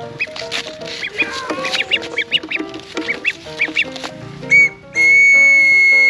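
A small plastic toy whistle blown: a short toot, then a loud, steady blast of about a second and a half near the end, over background music.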